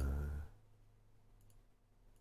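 A man's drawn-out 'uh' trailing off in the first half second, then near quiet with a few faint clicks.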